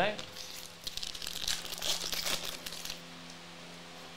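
Glossy trading cards handled in the hands, flipped and slid against each other, giving a crinkly rustle in short bursts for about three seconds. After that only a faint steady low hum remains.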